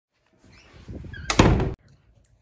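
A room door being shut: a rising rustle, then a loud burst about one and a half seconds in that stops suddenly.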